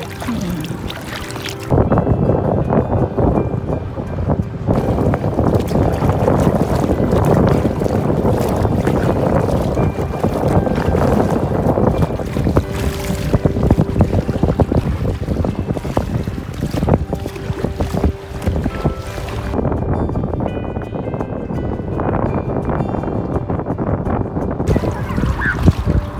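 Wind buffeting the microphone over choppy lake water slapping against a small inflatable boat. The noise jumps up sharply about two seconds in.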